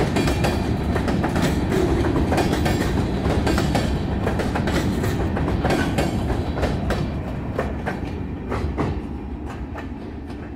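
Freight train of steel gondola cars rolling past close by, with a steady rumble and the wheels clicking sharply over rail joints. The sound fades over the last few seconds as the cars move away.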